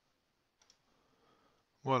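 A faint computer mouse click, a quick double tick about half a second in, as a program is launched from the Start menu.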